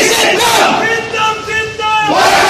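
A large crowd of supporters shouting loudly, many voices yelling at once.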